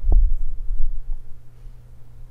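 Loud low thumping rumble for about a second, then a steady low hum.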